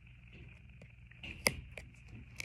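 Knife point poking holes in a plastic drinking straw: one sharp click about one and a half seconds in, with a few fainter ticks.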